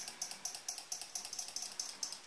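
A 12 V relay in a home-made flasher circuit clicking rapidly and evenly, about eight clicks a second, as it switches the lamp on and off. The click rate is the flash rate, which is set by the circuit's timing capacitor.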